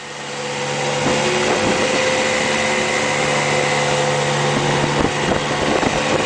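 Small outboard motor on an aluminium fishing boat running steadily under way, its hum picking up over the first second, with water rushing along the hull. A brief knock about five seconds in.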